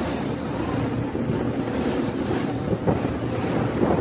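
A tour boat's engine running with a steady low hum, under water washing against the hull and wind buffeting the microphone, with a few brief louder swells of water or wind near the end.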